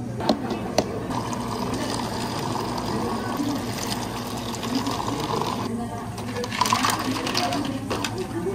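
Two sharp knocks, then water running in a thin stream into clear plastic cups for about five seconds. Near the end, ice cubes are scooped and clatter into a plastic cup.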